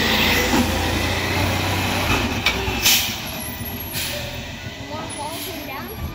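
Natural-gas-fuelled garbage truck pulling away and driving off down the street, its engine rumble fading as it goes. Short air-brake hisses about two and a half to three seconds in, and another about four seconds in.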